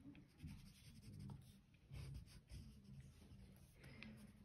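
Faint scratching of a watercolour pencil on paper, in short repeated strokes.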